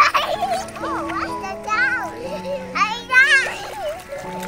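Young children squealing and shouting in play, with two high-pitched wavering squeals about two and three seconds in, over background music with long held notes.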